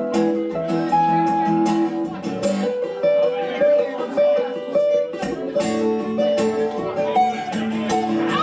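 Acoustic guitar played live, a picked line of single notes over ringing chords, with no singing.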